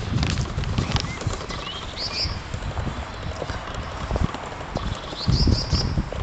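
Irregular low rumbling and knocking from a handheld camera being carried along outdoors, with a small bird chirping briefly about two seconds in and again, in a quick run of notes, near the end.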